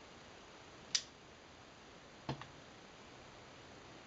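Soft-flame pipe lighter in use while a tobacco pipe is lit: a sharp click about a second in, then a duller double click a little after two seconds, over faint room hiss.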